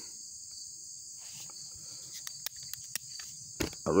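Steady high chirring of insects, with a few light clicks in the second half and a louder knock near the end as a folding multi-tool is opened out into its pliers.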